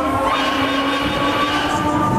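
Huss Break Dance-type fairground ride running, its spinning gondolas and turntable giving a steady rolling rumble with held tones, under faint fairground music.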